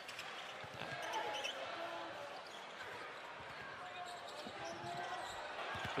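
Basketball arena ambience: a ball being dribbled on a hardwood court under the steady murmur of the crowd.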